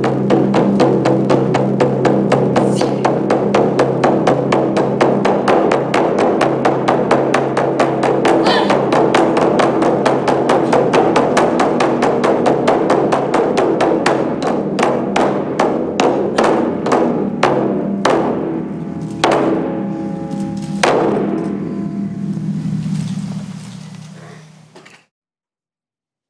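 Two large taiko drums struck with wooden sticks in a fast, dense roll that thins out about two-thirds of the way through into spaced single hits, ending with two big strikes that ring and fade. A steady low tone runs underneath.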